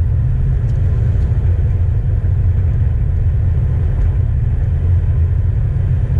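Chevrolet S-10 pickup heard from inside the cab while driving: a steady low rumble of engine and road noise.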